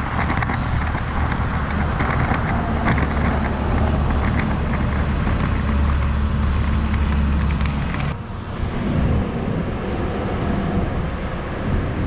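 Wind rumbling on a handlebar-mounted action camera's microphone while cycling, mixed with road noise from cars passing in the next lanes. About eight seconds in, the low rumble drops and the sound turns suddenly duller.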